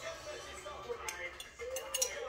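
Faint background television sound, music and voices, with a few light clinks of a utensil against a small glass jar as thick sauce is scraped out of it.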